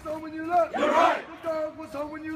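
A drill marching cadence sung call-and-response: a caller holds a sung line and a squad of young voices shouts the answer in unison about a second in, then the call starts again.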